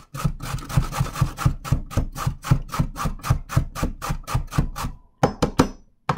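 A carrot being grated down the coarse side of a stainless steel box grater: quick, even rasping strokes, about five a second. The strokes stop about five seconds in, followed by a few sharp knocks.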